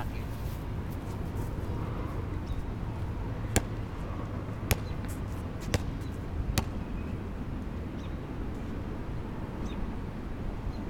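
A basketball bouncing on a hard outdoor court four times, about a second apart, over a steady low wind rumble.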